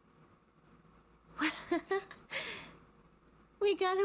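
A woman catching her breath, winded after running: a short, breathy voiced sigh about a second and a half in, then a long breath out. Her speech starts near the end.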